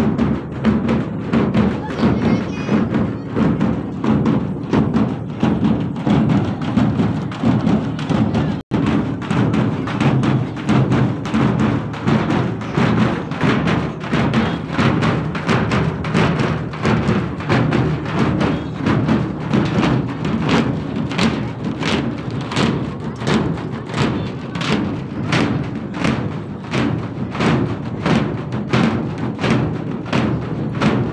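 Drum-led music with a steady beat, cutting out for an instant about nine seconds in.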